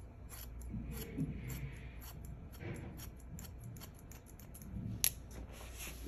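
Hairdressing scissors making a run of light, quick snips through long hair, about three a second, with one sharper snip about five seconds in.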